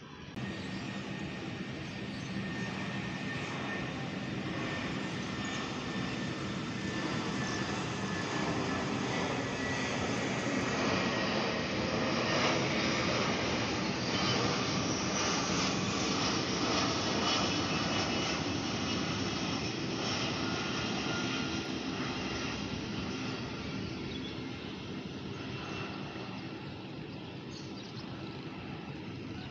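Jet airliner flying overhead: a steady engine roar that swells to its loudest about halfway through, then slowly fades as the plane moves away.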